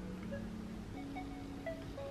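Soft background music: a slow run of held, chime-like notes that change pitch every half second or so, with a few short higher notes over them.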